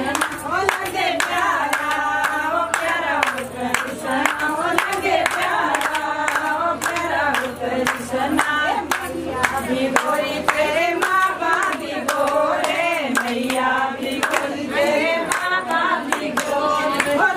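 A group of voices singing a Himachali Pahari Krishna bhajan, with rapid hand-clapping keeping time with the beat.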